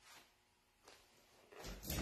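A quiet room, then near the end a short effortful vocal sound, a grunt or strained exhale, with the rustle of body movement as a person shifts her weight to get up from sitting on the floor.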